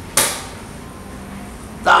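A single short, sharp hissing burst about a quarter-second in, fading quickly, then a man's voice starts near the end.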